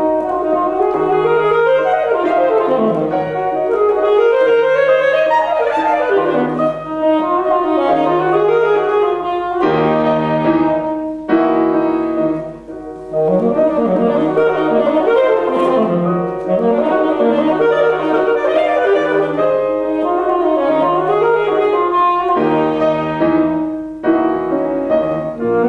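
Alto saxophone and grand piano playing together in a classical concerto for saxophone with piano accompaniment, the saxophone carrying the melody over the piano. The music breaks off briefly just past the middle, then carries on.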